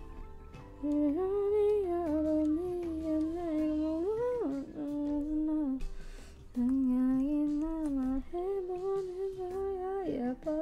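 A woman humming a slow tune, holding and gliding between notes, with a short break a little after the middle.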